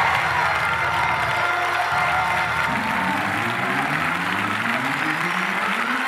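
A congregation clapping and cheering, with church music playing underneath. In the second half the music's deep notes climb upward in steps.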